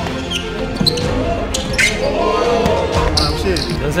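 A basketball dribbled on a hardwood gym floor, a few sharp bounces, under background music and excited voices.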